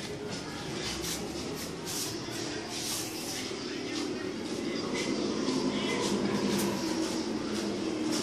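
Honda CG125's air-cooled single-cylinder four-stroke engine idling steadily, getting a little louder about halfway through.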